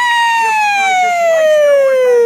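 A man's voice holding one long high falsetto note at the end of the song, sliding slowly and smoothly downward in pitch.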